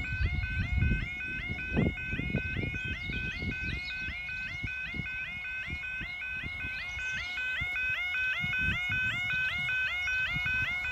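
Yodalarm level crossing audible warning sounding: a fast, evenly repeating warbling tone, with low rumbling underneath.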